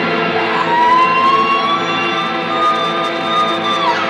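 Live psychedelic electric-guitar drone, many notes ringing together, with a long high held note that slowly rises in pitch and then slides down near the end.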